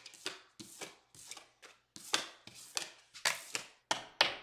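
Tarot cards being handled over a wooden tabletop: a quick, irregular run of sharp taps and flicks, about a dozen in four seconds, as cards are pulled from the deck and laid or tapped down.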